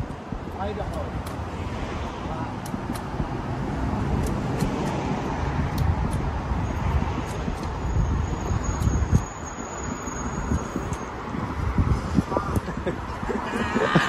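City street traffic noise with wind buffeting the microphone. A thin, high steady tone sounds for about four seconds in the middle.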